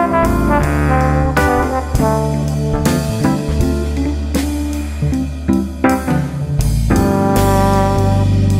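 Instrumental jazz: held brass notes over a bass line and drum kit.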